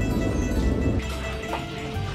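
Background music with sustained held notes.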